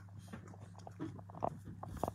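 French bulldog chewing and crunching treats: scattered faint crunches and clicks over a steady low hum.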